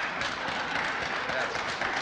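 A small group of people clapping their hands in applause, with indistinct voices mixed in.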